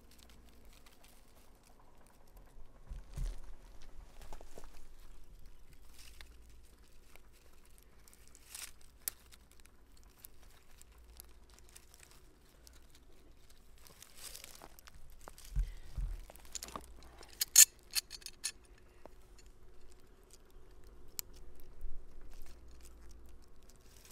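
Hands working a low-voltage landscape-light cable and connector on the ground, with faint rustling and crunching of dry leaves and gravel and scattered small clicks, including a quick cluster of sharp clicks past the middle.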